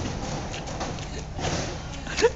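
Steady low background rumble of outdoor urban ambience, with no distinct event.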